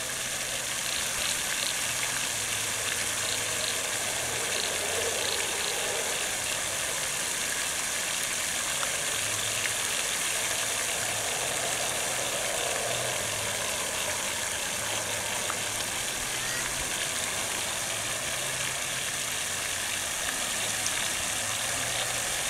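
Fountain jets spraying and falling back into the water: a steady hiss, with a low hum underneath that comes and goes.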